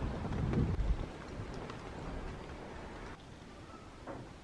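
Wind buffeting the microphone over a steady outdoor hiss, strongest in the first second. About three seconds in it drops to quieter room tone.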